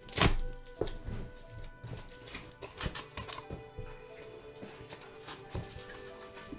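A tall cardboard shipping box being handled and opened: a loud thump just after the start, then scattered knocks, taps and scrapes against the cardboard, over background music with steady held notes.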